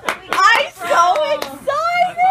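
Excited voices laughing and exclaiming, with a long high-pitched sliding call near the end and a few sharp clicks.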